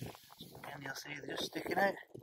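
A man's voice talking, the words unclear.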